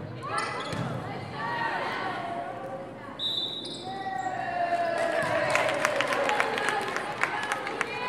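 Indoor volleyball rally in an echoing gym: the ball being hit and bouncing while players shout and call out, with a brief high tone about three seconds in. In the second half this gives way to a quick run of sharp claps and cheering.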